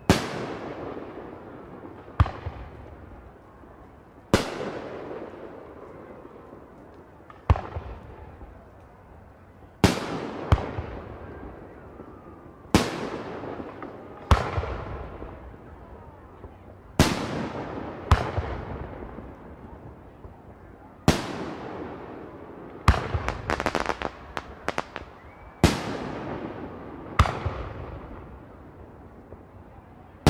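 Fireworks going off one after another: sharp bangs roughly every two seconds, each trailing off slowly. There is a quick cluster of several reports a little past the middle.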